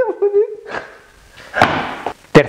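A man's drawn-out vocal sound tails off in the first half second, followed by two short rushes of noise. These come as he gets up off the floor.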